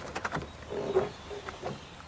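Carbon-fibre trunk lid of a 1970 Chevrolet Chevelle being unlatched and raised: a few light clicks, then a faint low creak about a second in.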